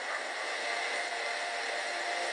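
Steady background hiss, the noise floor of the recorded call, with a faint thin tone underneath.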